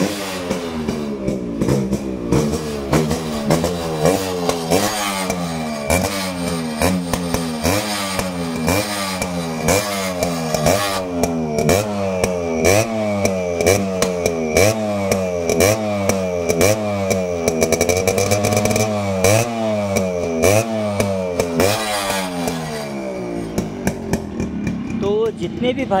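Yamaha RX 100's single-cylinder two-stroke engine running and being revved through its chrome silencer in short throttle blips about once a second, each rising and falling in pitch. There is a longer, steadier rev in the middle, and the engine settles back near the end.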